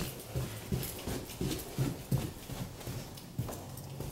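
Footsteps walking down a flight of indoor stairs, an even run of soft footfalls about three a second.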